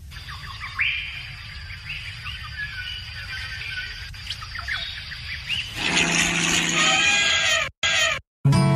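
Birds chirping, many short rising calls, over a low steady rumble. About six seconds in a louder, fuller sound takes over and cuts off suddenly near the end.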